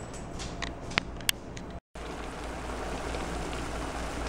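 A few sharp clicks of kitchen clatter over a low hiss, then, after a short break in the sound about two seconds in, the steady sizzle of mushrooms cooking in a steel sauté pan on the stove.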